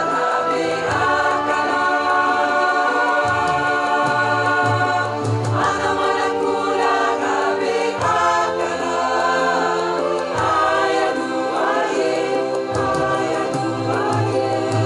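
Mixed choir singing in harmony in long held notes, with electronic keyboard accompaniment playing low sustained chords.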